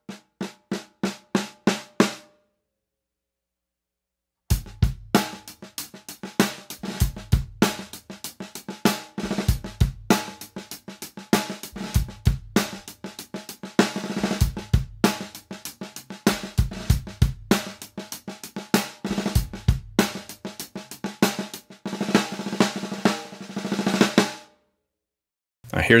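Snare drum fitted with PureSound Blaster 20-strand snare wires, played as evenly spaced single strokes on the snare alone for about two seconds. After a short pause, a full drum-kit groove follows, with bass drum and cymbals around the snare.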